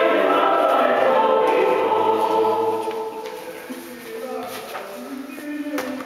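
A group of voices singing a shape-note hymn together, ending on a held chord that dies away about three seconds in.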